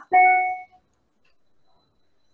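A short electronic tone, steady in pitch, lasting about half a second at the start, followed by near silence on a video call's audio.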